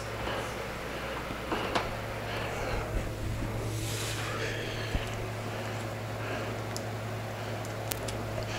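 A steady low electrical hum from the freshly plugged-in turntable and LED light kit, with a few light clicks and handling knocks.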